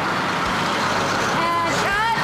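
A bus engine running with street traffic noise, a steady rumbling haze. A voice is heard briefly near the end.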